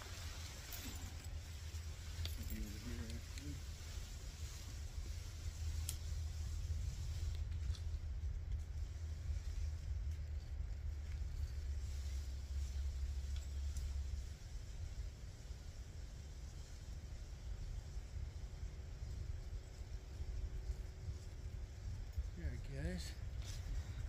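Wind buffeting the microphone, a steady low rumble that eases after about 14 seconds, with faint distant voices now and then.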